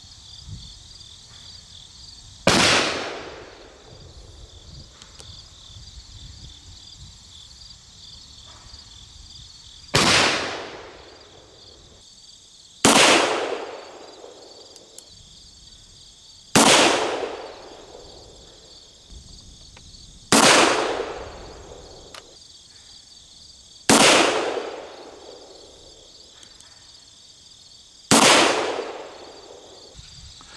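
Shots from a .31-caliber black-powder cap-and-ball pocket revolver, a Pietta replica of the 1863 Remington pocket model. Seven sharp reports come several seconds apart, each dying away over about a second.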